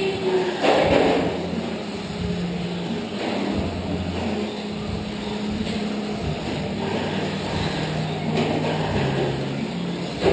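Radio-controlled short-course trucks racing on an indoor clay track: a steady mix of their motors and tyre noise, echoing in the hall.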